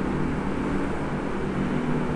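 A steady low mechanical hum, even and unchanging, with a faint constant pitch.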